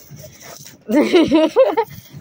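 A woman's high-pitched voice, about halfway through, after a faint hiss.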